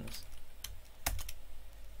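Computer keyboard typing: a few separate keystrokes, the loudest about a second in, as a terminal command is typed and entered.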